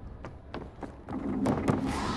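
About five sharp hits spread through two seconds, with backing music filling in about a second in.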